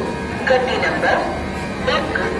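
Indistinct voices talking, with music underneath.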